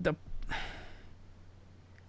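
A man's audible sigh, a soft breathy exhale lasting about half a second, just after he breaks off a sentence.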